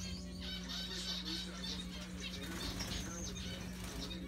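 Male zebra finch shifting and hopping about in its nest, its wings fluttering and its feet rustling the paper-towel lining and dry grass, in two scratchy spells, with a brief thin high note in the middle of the second.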